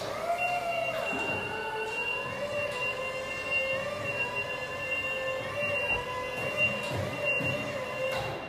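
Electric drive of a Skyjack SJ3226 scissor lift whining as the lift drives along, its pitch wavering up and down with speed, over a steady high tone.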